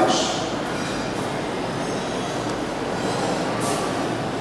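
Steady, even background noise with no voice standing out above it.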